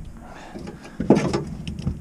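Handling knocks on a boat deck: a low rumble at first, then a sharper knock about a second in and a few lighter knocks after it.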